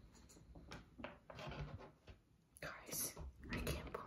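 A woman whispering softly in short, broken bursts.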